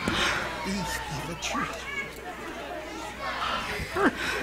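Indistinct chatter: several voices talking at once, none of them clear.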